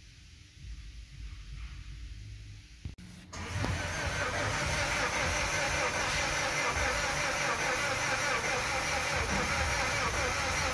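Mazda 2.2 Skyactiv-D diesel engine being cranked by its starter without catching, heard faintly at first and then loud and steady from about three seconds in. The cranking is even, with no compression pulses, because the engine has no compression, which the mechanic traces to faulty hydraulic tappets.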